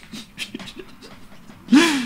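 A man's quiet breaths and small mouth sounds during a pause in talk, then a short, loud voiced sound near the end as he starts to speak again.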